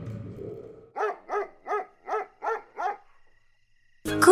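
Six short, evenly spaced yapping calls over about two seconds, each rising and falling in pitch, after the tail of low music fades out in the first second.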